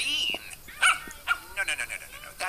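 A dog's voice: one whine that rises and falls at the start, then a few short, sharper sounds, mixed with a man's grumbling voice.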